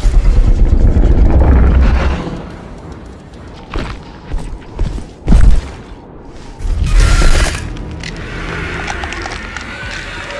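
Soundtrack of an animated monster-fight clip: music under a deep booming rumble for the first two seconds, then four sharp hits about half a second apart in the middle, and a loud blast about seven seconds in before the music carries on more quietly.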